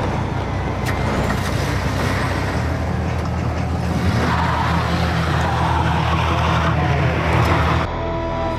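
Volkswagen Beetle's air-cooled flat-four engine running; its pitch steps up about two and a half seconds in as it revs, and the sound cuts off abruptly just before the end.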